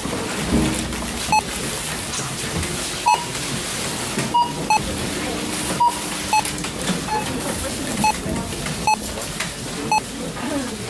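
Grocery checkout barcode scanner beeping as items are scanned: about ten short, single-pitched beeps at uneven intervals over a steady hubbub of store background noise.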